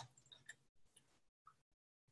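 Near silence, broken by a few faint computer mouse clicks in the first half second and one more soft click about a second and a half in.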